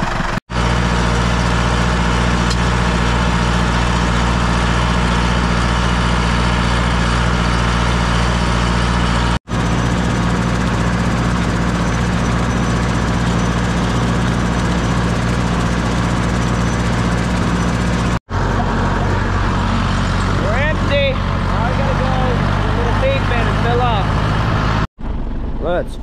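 Deutz D 6006 tractor's air-cooled diesel engine running steadily under load while driving the spreader through the PTO, a constant low engine note. It breaks off abruptly several times.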